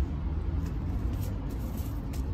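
Steady low background rumble, with a few faint rustles of paper seed packets being handled.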